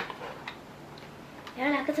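A sharp click at the start and a couple of faint ticks, then a high-pitched voice begins speaking in Vietnamese about one and a half seconds in.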